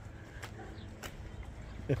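Low, steady outdoor background noise with two faint clicks, then a man's voice starts right at the end.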